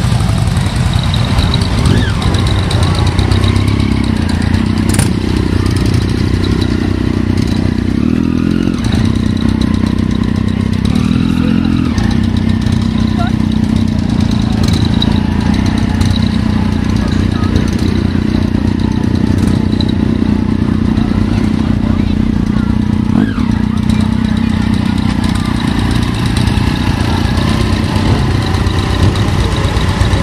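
Motorcycle engine idling steadily, with voices in the background.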